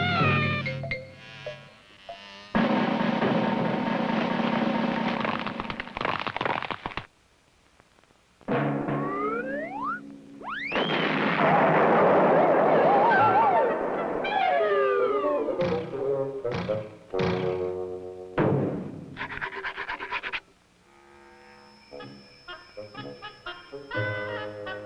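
Cartoon soundtrack of music and comic sound effects. Rising whistle-like glides come near the middle and a falling glide follows, then a run of sharp knocks, with a quieter stretch near the end.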